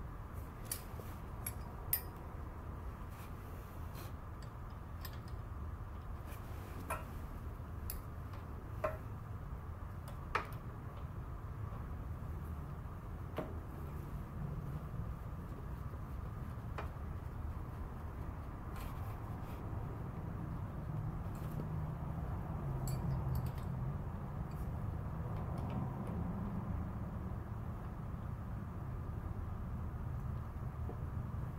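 Scattered light clicks and ticks of hands and fittings working a motorcycle's clutch cable adjuster, about a dozen in all, over a steady low background hum.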